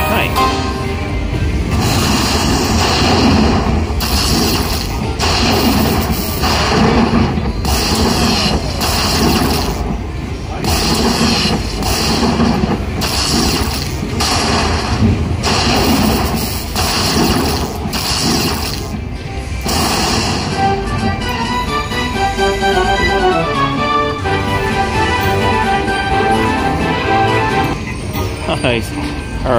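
Aristocrat Dollar Storm slot machine playing its win celebration music at the end of a free-spin bonus, with repeated heavy hits about once a second. After about 21 seconds the music gives way to a run of stepping chime notes as the win is counted up.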